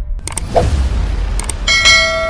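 Animated subscribe-button sound effects: a whoosh, sharp mouse-style clicks, then a bright ringing ding that starts near the end.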